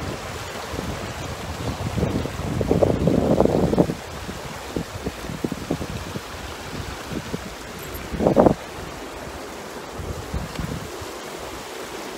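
Wind buffeting the microphone, swelling for about two seconds a couple of seconds in, with scattered short knocks and a brief louder gust about eight seconds in.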